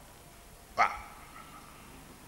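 A single short, sharp vocal sound a little before the middle, then low room tone.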